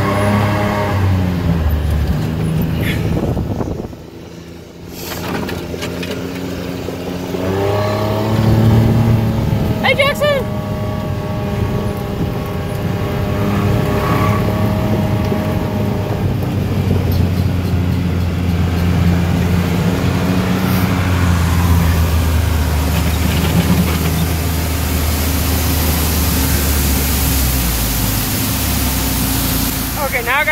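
A John Deere Gator utility vehicle's engine, heard from the driver's seat as it drives along. The engine pitch rises and falls with the throttle and drops off briefly about four seconds in. It then runs fairly steadily under way and eases off near the end.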